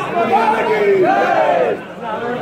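A crowd of men shouting slogans together, in two long drawn-out shouts, with a brief drop just before the end.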